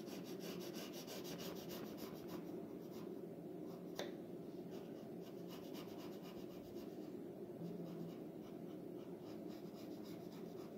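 Pencil scratching on drawing paper in quick, short sketching strokes, busiest in the first few seconds, with one sharp tick about four seconds in, over a low steady hum.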